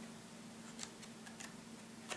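Faint handling of a CD album's paper photo booklet as its pages are turned by hand: a few small ticks and paper rustles over a low steady hum.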